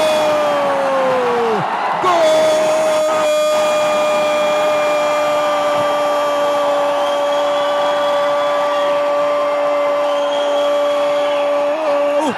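Male Portuguese-language sports narrator's drawn-out goal cry, 'goool', held on one steady note. A short first cry falls away, then after a breath comes one long note of about ten seconds that drops off at the end.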